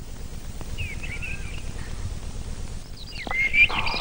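Birds chirping, a few short calls about a second in and a denser flurry of chirps near the end, over a low steady background rumble.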